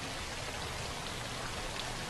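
Steady splashing of fountain water jets, heard as an even hiss.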